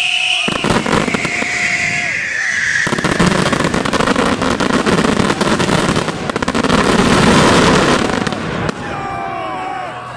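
Fireworks finale: high whistling and scattered crackling at first, then from about three seconds in a dense barrage of rapid crackling bursts and low booms that stops abruptly near the end.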